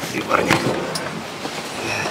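Steady background noise inside a railway passenger coach standing at a platform, with a short murmur of voices and rustling from handling.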